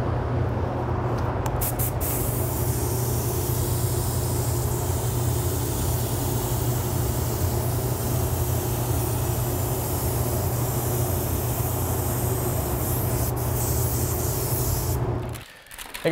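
Gravity-feed spray gun hissing as it sprays a coat of white sealer, starting about two seconds in, over the steady low hum of the running paint booth's fans. Both stop abruptly near the end.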